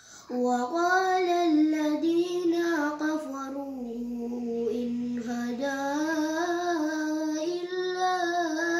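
A young boy's voice chanting Quran recitation in Arabic (tartil), in long, melodic phrases that come in just after the start. Near the middle he holds one note steady for over a second before the melody rises again.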